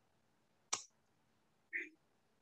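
Two short clicks about a second apart, the second one duller. They are the kind of click a computer mouse or key makes when advancing a slide.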